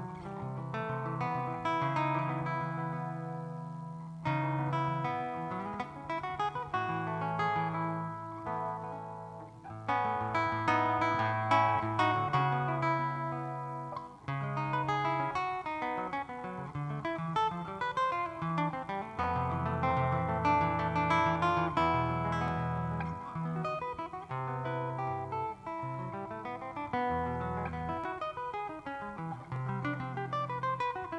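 Solo electro-acoustic guitar played with the fingers in a jazz style, chords and melody lines over changing low bass notes, with no voice.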